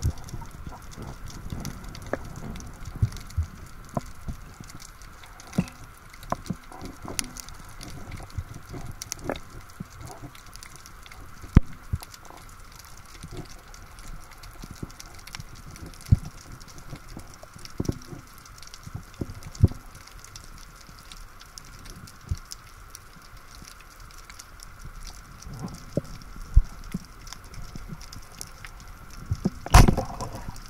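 Underwater ambience picked up through an action camera's housing: a low hiss scattered with irregular sharp clicks and crackles, and a few louder knocks, one about a third of the way in and one at the very end.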